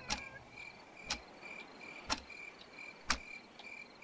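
Faint crickets chirping in a steady, high, pulsing trill, with a sharp tick about once a second.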